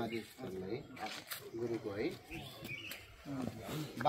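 Indistinct men's voices talking.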